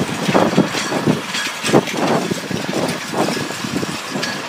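Steel push frame shoved along a concrete sidewalk, its flat metal feet scraping over the pavement in a run of short, uneven surges, several a second.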